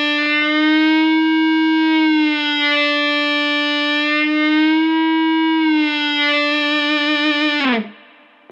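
Electric guitar string driven by an EBow, giving one long sustained note with no pick attack. The note is bent up in pitch and let back down twice, with the EBow tilted away from the string, then stops abruptly near the end.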